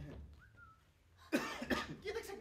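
A person coughs loudly once, a sudden harsh burst about a second and a half in.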